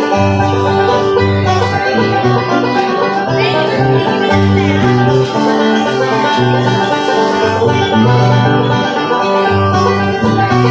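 Acoustic guitar and banjo playing a fast bluegrass instrumental live, the banjo picking over the guitar's rhythm and bass notes.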